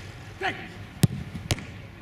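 Two sharp thuds of a football being struck, about half a second apart.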